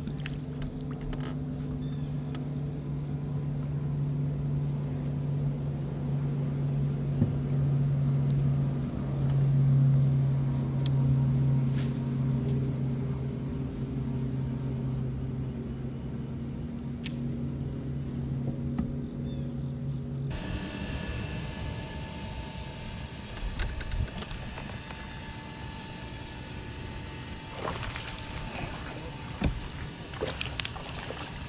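Bass boat's electric trolling motor running with a steady hum that swells a little louder midway. About two-thirds through it cuts off abruptly, leaving wind and water noise with a few sharp clicks near the end.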